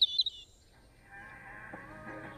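A few quick, high bird chirps, ending about half a second in, followed after a short pause by a faint hum with soft steady tones.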